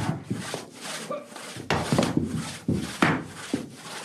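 Rhythmic scraping and rubbing strokes, about two a second, from actors working with a bucket and soil on an earth-covered stage.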